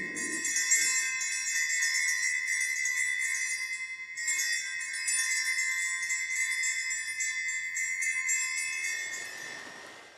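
Altar bells are shaken at the elevation of the consecrated host: a jingling, ringing cluster of small bells. They are shaken again about four seconds in and die away near the end.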